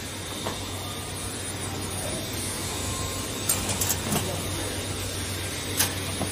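Steady mechanical hum of a packaging-machine workshop with a low constant drone, while a small plastic container is handled and set against the metal hopper of a bottle cartoner, giving a few light clicks and knocks, a cluster a little past the middle and a sharper one near the end.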